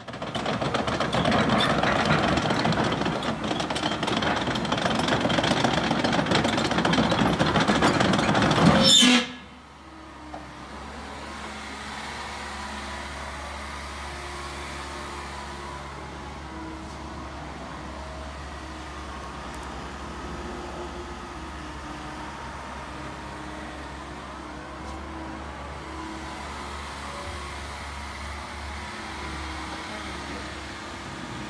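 A loud rushing intro sound that cuts off sharply about nine seconds in, followed by the steady, quieter running of a Terex/Yanmar TC125 tracked excavator's diesel engine, with a deep hum.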